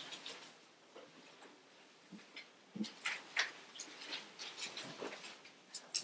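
Faint rustling and light taps of thin Bible pages being turned, in short scattered bursts over the second half.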